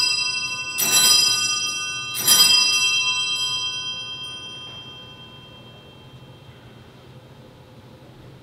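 Wall-mounted brass three-bell sacristy bell rung three times, about a second and a half apart, its bright ringing dying away over a few seconds. It signals the priest coming out for the start of Mass.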